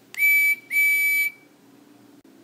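Talking Percy toy engine's small speaker playing a recorded steam-whistle effect: two short toots at one steady high pitch, the second a little longer.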